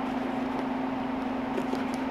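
A steady low hum runs throughout, with a few faint small clicks in the second half from the side zipper of a tactical hiking boot being worked in the hands.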